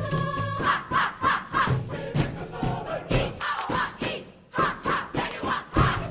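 A choir or group of voices singing and chanting loudly, with sharp rhythmic percussive hits and a brief drop in sound about three-quarters of the way through.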